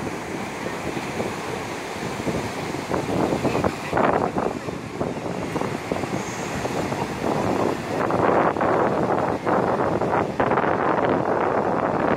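Ocean surf breaking and washing up the beach, with wind buffeting the microphone. The noise grows louder about four seconds in and again about eight seconds in.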